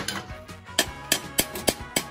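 A hammer tapping a new wastegate bush into the turbocharger's cast-iron turbine housing, sharp metal knocks about three a second. Light taps drive the bush the last millimetre home.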